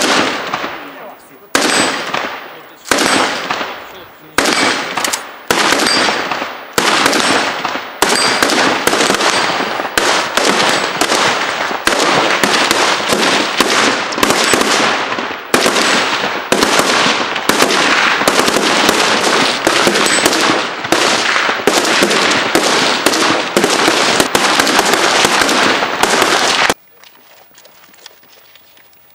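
Gunfire on a shooting range: a string of loud shots, each with a ringing echo, spaced about a second and a half apart at first, then coming quickly, roughly two a second, until they stop abruptly near the end.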